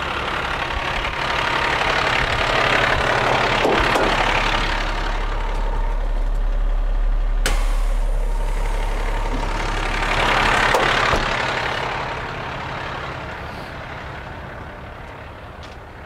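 Diesel truck engine idling steadily, its low hum growing louder through the middle and easing off toward the end. A single sharp click about halfway through.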